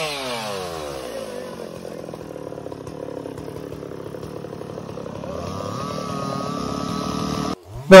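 Chainsaw engine dropping from high revs to a lower running speed at the start, running steadily, then revving up again about five seconds in. It cuts off abruptly near the end.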